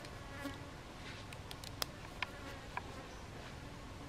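An insect buzzing faintly close by over quiet outdoor background, with three small sharp clicks in the middle from hands tying string onto a bamboo stick.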